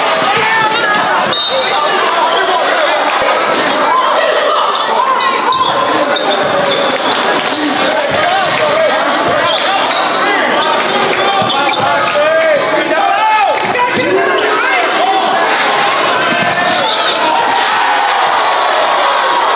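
Live basketball game sound in a gym: a basketball bouncing on the hardwood court, with short impacts scattered throughout, under many overlapping voices of players and spectators.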